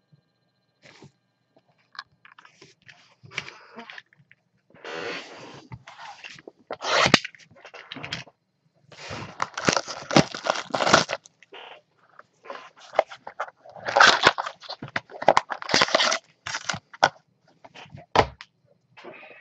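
Crinkling and rustling of trading-card packaging being handled, in irregular bursts with short pauses, loudest in the second half.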